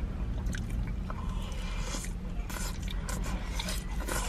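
Close-miked eating of fries and an onion ring: soft chewing and wet mouth sounds with scattered small clicks, over a steady low hum.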